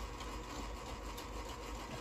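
A steady low hum, with a dry-erase marker writing on a whiteboard.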